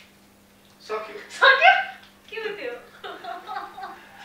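Excited voices and laughter breaking out about a second in, with a couple of loud high-pitched cries, over a steady low electrical hum.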